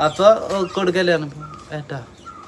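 A man talking, with a drawn-out, slightly sing-song delivery.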